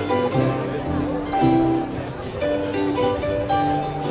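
Austrian folk music from a small ensemble of hammered dulcimer, guitar, double bass and accordion playing a tune, with plucked strings over held accordion notes and a bass line.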